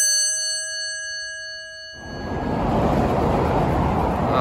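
A bright bell-like chime rings out and fades over about two seconds. Then comes an abrupt cut to a steady noise of freeway traffic.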